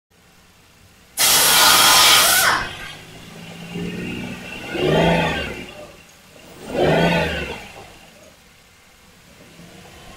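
2008 Ford Explorer 4.0L SOHC V6 starting with a loud burst of cranking and catching about a second in. It is then revved twice, the pitch rising and falling each time, and settles back to idle.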